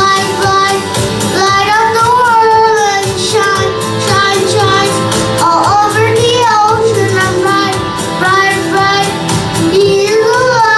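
A young boy singing a song into a microphone, his voice carried through the sound system, over music accompaniment.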